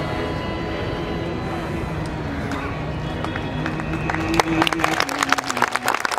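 Theatre background music of long held tones, joined about four seconds in by audience applause, a dense patter of hand claps over the fading music.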